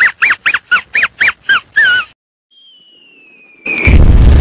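Muttley's snickering cartoon laugh: a quick string of squeaky up-and-down snickers, about four a second, for about two seconds. Then a falling whistle like a dropping bomb, cut off near the end by a loud explosion.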